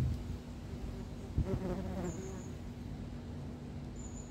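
An insect buzzing close by, with a steady low hum and a low rumble on the microphone. There is a thump about a second and a half in, followed by a wavering buzz for about a second, and a brief high chirp about two seconds in.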